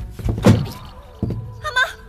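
A heavy thud about half a second in and a lighter thump about a second later, the sounds of a scuffle as a woman is shoved aside, over drama score music with held notes.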